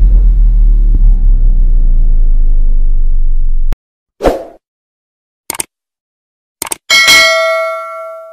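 Sound effects for a subscribe-button animation: a deep, loud, sustained rumble that cuts off suddenly, then a short whoosh, two quick double clicks, and a bell ding that rings out and fades.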